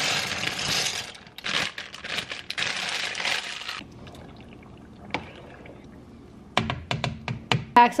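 Dry elbow macaroni poured from a plastic bag into a pot of boiling water: a few seconds of rattling and crinkling that stops abruptly, then a quieter hiss of the boiling pot. Near the end come several sharp knocks, such as a utensil against the pot.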